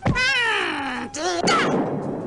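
A thump, then a cartoon voice crying out in a long falling, wavering wail. A shorter rising-and-falling cry and a rasping noise follow near the end.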